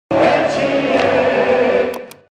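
Short intro music sting with sustained choir-like voices, held at an even level, then fading out near the end with a brief bright shimmer.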